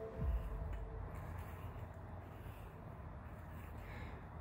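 Faint, muffled handling noise of slip-joint pliers gripping and turning an oil dipstick extension tube through a pad of sponge rubber, over quiet room tone. The handling noise is loudest just after the start.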